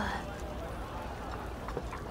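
Quiet restaurant background with a few faint, sharp clicks of tableware, just after the tail of a spoken word.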